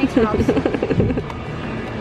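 People talking for about the first second, over a steady low outdoor background noise that carries on after the talk stops.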